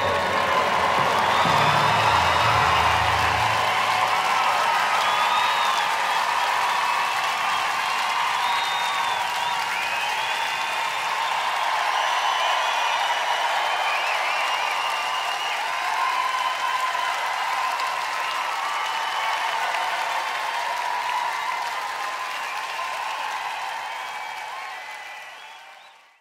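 A rock band's final chord ringing out for the first few seconds, then a large audience applauding and cheering, fading out at the end.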